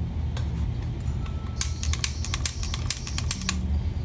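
A quick, irregular run of sharp clicks and taps lasting about two seconds, over a steady low hum.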